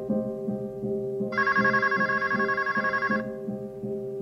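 A telephone rings once, a trilling ring about two seconds long starting just over a second in, over a steady hip-hop instrumental beat.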